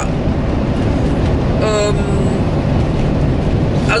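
Steady road and engine noise heard inside a moving motorhome's cab, a loud, even low rumble throughout.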